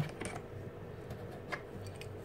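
Faint metallic clicks as a small steel faceplate arbor is pushed into the collet chuck of a Proxxon DB 250 mini lathe and a flat spanner is handled. There are two light clicks, one just after the start and one about a second and a half in.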